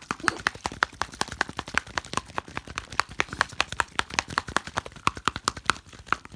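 An LOL Surprise Fuzzy Pets plastic bottle holding water and a toy pony figure, shaken hard by hand: quick rattling knocks of the figure against the plastic, several a second, mixed with water sloshing inside.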